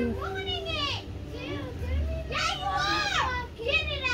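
Children's voices: high-pitched calls and chatter, loudest in the second half, over a steady low hum.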